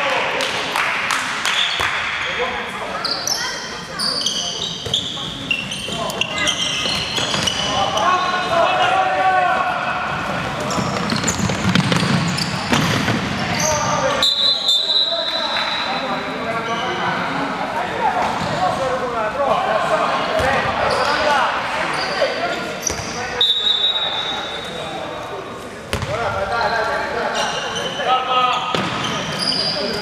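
Indoor handball match: players' shouts and calls echoing in a large sports hall, with the ball bouncing on the wooden court and short high squeals at a few points.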